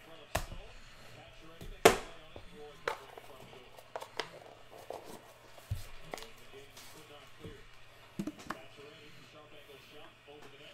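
Several sharp knocks and taps as boxes of trading cards are handled and set down on a tabletop, the loudest about two seconds in and a quick pair near the end.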